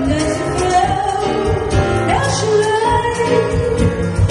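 Live music: a woman singing a slow melody into a microphone, with a note sliding upward about two seconds in, accompanied by keyboard and hand percussion including congas.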